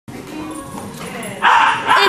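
Two dogs play-wrestling, with a short, loud dog vocalisation about a second and a half in.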